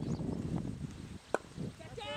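Cricket bowler's run-up footsteps thudding on the turf through the delivery stride. A little over a second in comes a single sharp crack of the bat striking the ball.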